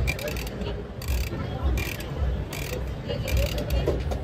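Crank handle of a coin-operated gachapon capsule-toy machine being turned by hand, its ratchet mechanism clicking in a series as the knob rotates to release a capsule.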